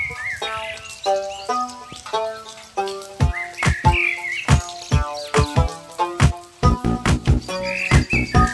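Instrumental background music of separate pitched notes over sharp percussive hits, with short high chirp-like glides about a second in, around four seconds and near the end.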